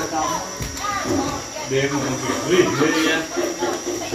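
Indistinct talking: voices speaking throughout, too unclear to be written down as words.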